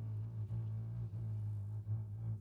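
Carbon-fibre cello and double bass in a free-jazz passage, sounding a steady low note that breaks off and restarts every half second or so, with no horn playing.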